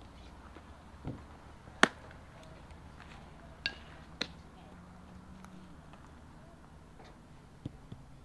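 A sharp, loud pop about two seconds in, a pitched baseball smacking into the catcher's leather mitt, with a few quieter knocks and clicks around it.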